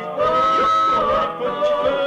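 Unaccompanied male doo-wop vocal group singing close harmony, a high voice holding a long note over the lower voices before the line bends away.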